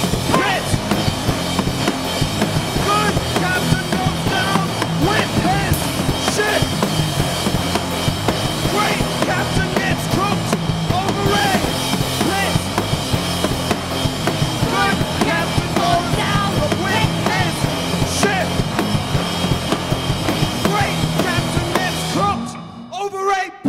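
A three-piece rock band playing an instrumental passage live: electric guitar, bass guitar and drum kit, loud and dense throughout, stopping abruptly at the very end.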